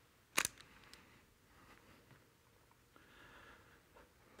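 A single sharp click or knock about half a second in, followed by a few faint ticks, in an otherwise quiet room.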